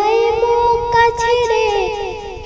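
A woman singing a Bengali song in a high voice with no backing, holding long notes with a slight waver; a fresh note comes in about a second in and the line falls away near the end.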